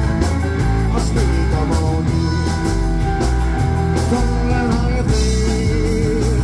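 A live rock and roll band playing an instrumental stretch: two electric guitars, an upright bass and a drum kit, with a steady driving beat.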